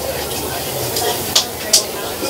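Outdoor ballfield background: a steady hiss with faint distant voices, and two short sharp clicks in quick succession a little past the middle.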